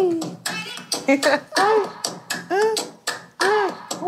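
Short sampled vocal cries of "hey", each rising and then falling in pitch, come back several times over sharp percussion hits. They are yelling effects laid over an Afro percussion sample in a track.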